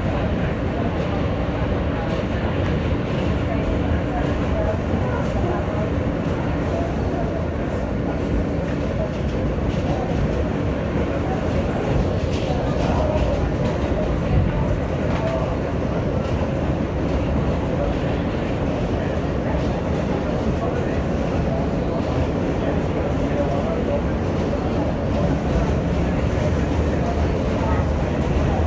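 New York City subway train running on an elevated line, heard from inside the car: a steady rumble of wheels on the rails.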